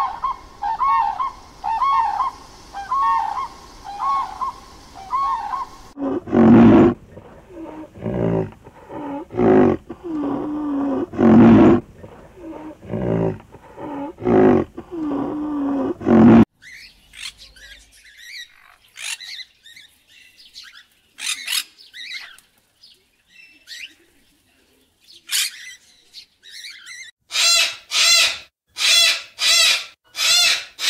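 A run of animal calls in three clips. First a crane gives repeated trumpeting calls, about two a second. Then come loud low calls about once a second, then faint high bird chirps, and near the end a sulphur-crested cockatoo gives a rapid series of loud squawks.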